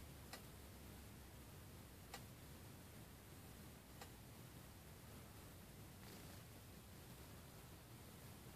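Near silence: room tone with three faint ticks about two seconds apart.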